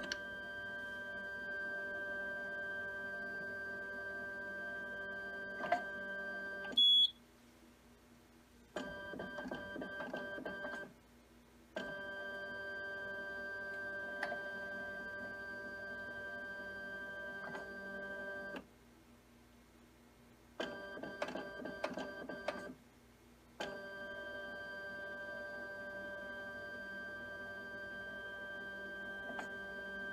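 HistoPro 414 linear slide stainer's carrier-transport mechanism running: a steady multi-tone motor whine in stretches of several seconds, broken by short pauses and by stretches of clicking and rattling as the slide carriers are moved on to the next station. A short high beep sounds about seven seconds in.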